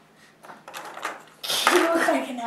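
Faint clicks and handling noise from wooden clothespins being clipped onto an ear. About one and a half seconds in, a boy gives a sudden cough that runs straight into his voice.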